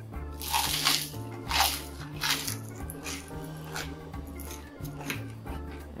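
Background music, with crunching and chewing of a pan-fried cricket in the mouth laid over it. The crunches come as a few irregular noisy bursts, strongest in the first two and a half seconds, then weaker.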